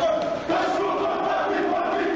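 A rugby team chanting together in loud, held shouts: a pre-match war cry in the changing room.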